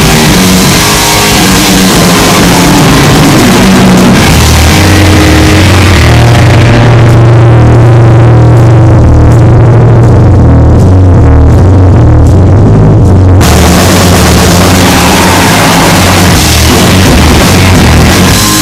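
Live rock band playing an instrumental passage on electric guitar, bass guitar and drum kit, very loud. From about seven seconds in the high end drops away, leaving held low bass notes and guitar, and the full band comes back in about thirteen seconds in.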